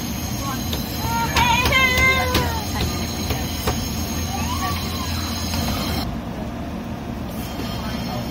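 Steady low rumble of a passenger train running, heard from inside the carriage, easing off about six seconds in, with people's voices briefly rising above it about a second and a half in.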